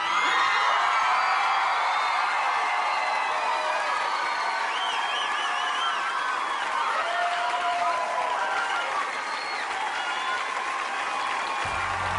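Studio audience applauding and cheering at the end of a song, a steady mass of clapping with high shouts and calls rising over it. Low music comes in just before the end.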